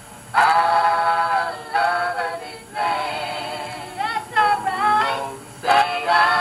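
Gospel singing by a group of voices, held sung notes in several phrases with short breaks between them.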